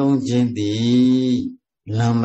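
A Buddhist monk's male voice intoning in a sing-song chant, with a long held note, breaking off about one and a half seconds in; the voice starts again just before the end.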